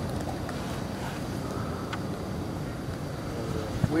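Steady low rumble of wind on the microphone, with a couple of faint clicks.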